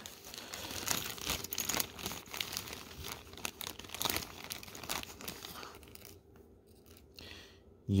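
Clear plastic zip-lock bag crinkling and rustling as hands work it open, a run of irregular crackles that dies away in the last couple of seconds.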